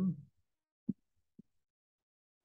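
Two soft, dull thumps about half a second apart, following the last of a spoken word.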